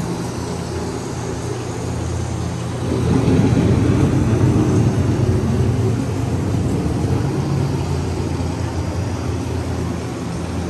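Low, steady rumble of a dark ride's storm sound effects, swelling into a louder rolling rumble like thunder about three seconds in, then easing off.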